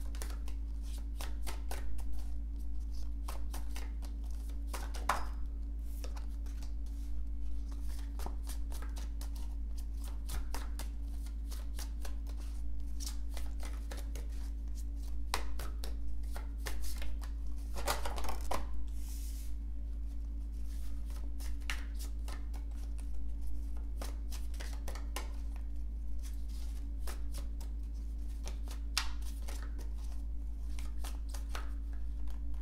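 Tarot deck being shuffled by hand and cards laid onto a wooden table: a run of short papery clicks and snaps, thickest about eighteen seconds in, over a steady low hum.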